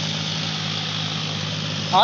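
Diesel tractor engine running at a steady pitch, a constant low hum.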